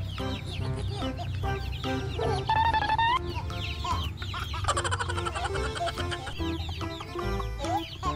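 Baby chicks cheeping: many short, high peeps in quick succession, over background music.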